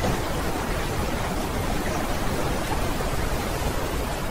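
A steady, even rushing noise with no pitch or rhythm: the ambient background sound of an AI-generated animated clip.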